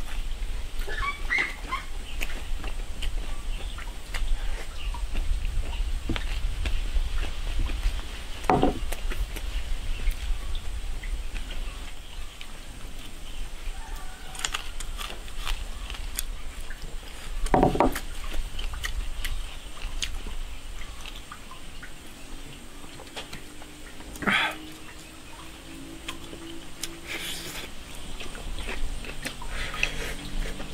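Eating sounds: chewing and lip smacking, with chopsticks clicking against a rice bowl, over a steady low background rumble. A few short, louder mouth sounds come about a third, halfway and four-fifths of the way through.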